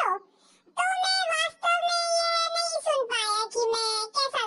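A high-pitched voice singing a short phrase, with one note held steady for over a second in the middle and falling notes near the end.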